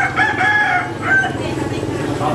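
A rooster crowing once, one call of about a second that breaks into a short-long-short shape, over background crowd chatter.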